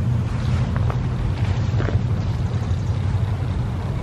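A steady low rumble with no clear source, most of its weight in the bass.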